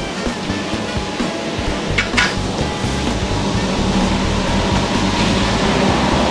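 Steady rush and low hum of carpet extraction equipment running, with a brief hiss about two seconds in, under background music.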